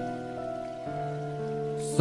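Soft instrumental backing music of sustained, pad-like chords, shifting to a new chord about a second in, over a faint rain-like hiss. A brief high hiss comes just before the end.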